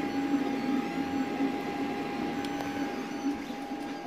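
Creality CR-X 3D printer printing, its motors whirring in short stretches that shift in pitch as the print head moves, over a steady tone.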